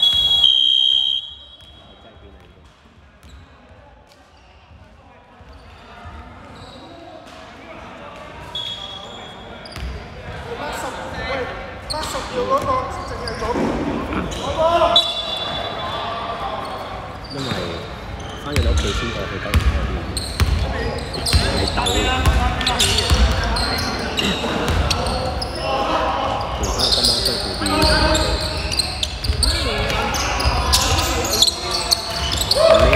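A referee's whistle blows briefly at the start, then the gym goes quiet for a few seconds. Players' voices and calls then build up in the echoing hall, with a basketball bouncing on the wooden court as play resumes in the second half.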